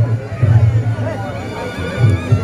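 Reog Ponorogo gamelan accompaniment: a slompret shawm wailing in wavering, sliding notes over a steady pulsing low drum and gong beat, mixed with the crowd's voices.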